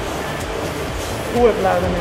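Steady rush and splash of water from a swimmer's strokes in an indoor pool, then a voice begins speaking near the end.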